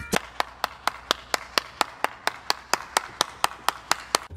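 A fast, even series of sharp clicks, about four a second, running steadily with no change in pace.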